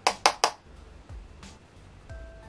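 Three quick taps or swipes of a makeup brush against a powder foundation compact, close together in the first half second, as the brush is loaded with powder.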